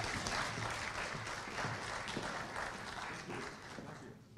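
Audience applauding, the clapping thinning out and dying away toward the end.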